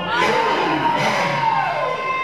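Congregation cheering and shouting in response to the preacher, with one long high held note sounding over the crowd noise.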